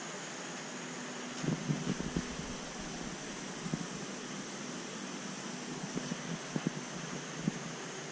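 Steady hiss and faint hum of running equipment, with a few soft knocks and taps: a cluster about a second and a half in, and scattered ones later.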